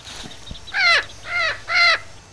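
Crows cawing: three harsh caws in quick succession in the second half.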